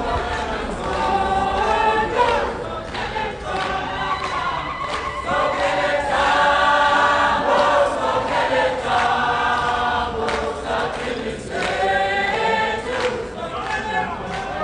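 A choir singing, many voices together in sustained phrases with short breaks between them.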